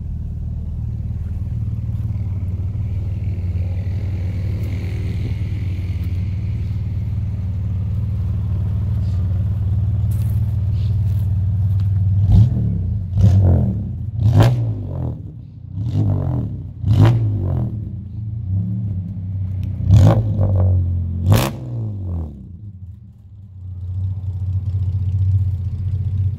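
Dodge Polara RT's six-cylinder engine idling steadily, then blipped hard about half a dozen times in quick succession in the second half, each rev rising and falling back. It settles to idle again near the end.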